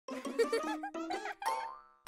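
Short cartoon-style intro jingle: bright, bouncy gliding notes in three quick phrases, the last one fading out near the end.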